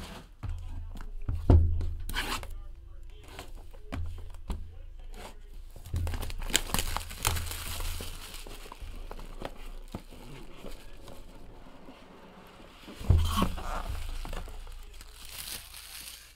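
Plastic shrink-wrap being torn off a sealed trading-card hobby box and crumpled, with crinkling in patches that is densest about six to nine seconds in and again near the end. The cardboard box knocks dully on the table a few times as it is handled.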